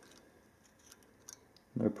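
A few faint, light clicks as a pen-like tool flicks the fan blades of a 1:200 diecast model airliner's engine to spin it.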